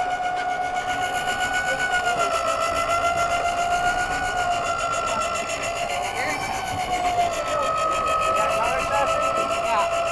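Electric deep-drop fishing reel motor winding in line against a hooked fish on a heavily bent rod. It makes a steady high whine that sags slightly in pitch a couple of times.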